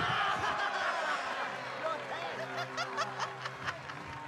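A crowd of people laughing, many voices overlapping, loudest at the start and easing off.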